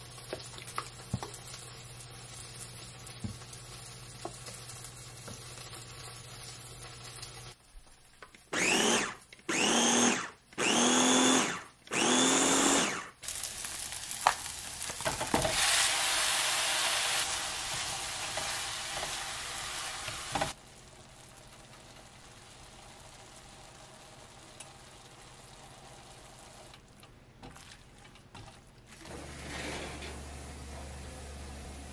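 Ninja Express Chopper pulsed four times in quick succession, each burst a motor whine that rises as it spins up and then holds, chopping guacamole ingredients. Afterwards a steady sizzle from a frying pan as ground beef goes in with diced peppers, cutting off suddenly.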